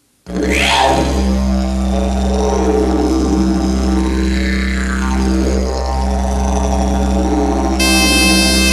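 Didgeridoo playing a loud, steady low drone with slowly sweeping changes in tone, starting just after a brief silence. A high-pitched wind instrument joins near the end.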